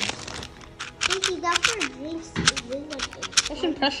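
Sharp plastic clicks of a magnetic 4x4 speed cube being turned by hand, coming in quick irregular bunches from about a second in, over voices talking in the room.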